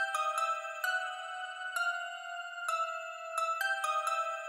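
Music: a high, bell-like melody of struck notes that ring on and overlap, with no bass or drums.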